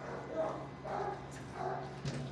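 Dogs barking in a shelter kennel block: three short, evenly spaced barks over a steady low hum.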